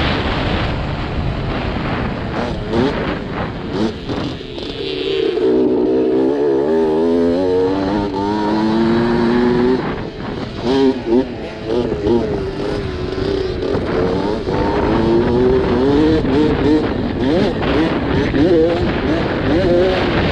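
Dirt bike engine heard from an onboard camera as it races down a motocross track, its pitch climbing as it pulls through the gears, with drops where the throttle is rolled off about four and ten seconds in. Wind and rough-track rush buffet the microphone throughout.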